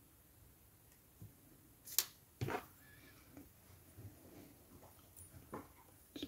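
Quiet handling sounds from working on a small plastic model: a few faint clicks and taps of tweezers and plastic parts, the sharpest about two seconds in, followed shortly by a soft knock.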